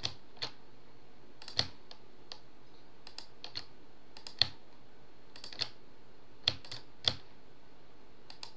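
Irregular sharp clicks of a computer mouse button and keyboard key, about a dozen, some in quick pairs, the loudest about a second and a half in, four and a half seconds in and near seven seconds in.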